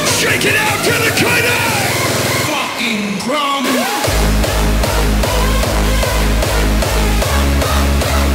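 Live hardstyle music played loud over an arena sound system. A rapid rolling kick build-up drops out about two and a half seconds in, leaving a short break with sweeping sounds. The heavy distorted hardstyle kick drum then slams back in at a little over two beats a second, with the crowd yelling.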